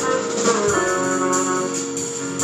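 Live band music: a bassoon holding sustained notes over keyboard and a drum kit, with cymbal strokes through it.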